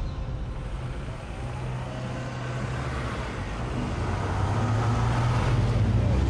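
SUV engine and tyres as the vehicle drives up a street and approaches, a steady low hum growing gradually louder.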